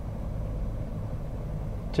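Steady low vehicle rumble heard inside a pickup's cab, with no clicks or knocks.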